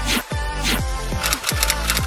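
Electronic intro music with a steady beat of deep bass kicks, about one every 0.7 seconds. A quick run of sharp drum hits comes in the second half.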